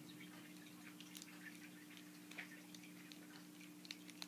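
Near silence with a few faint, scattered clicks of a small Transformers Real Gear Robots Meantime figure's joints being folded and moved by hand during transformation, over a steady low hum.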